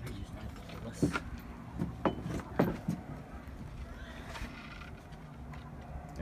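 A steady low hum, with a few sharp knocks about one, two and two and a half seconds in.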